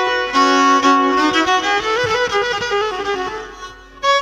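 Black Sea kemençe bowed in a short melodic phrase, its notes stepping downward and fading out near the end.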